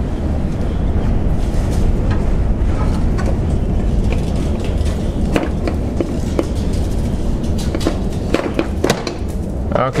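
Lower radiator support of a 2013 Ford Focus being pulled and wiggled out from under the radiator by hand: scraping and rattling, with a series of sharp clicks and knocks in the second half as it works free, over a steady low rumble.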